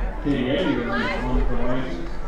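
Voices of players and spectators calling out across a soccer field, with one voice held for over a second; no clear words.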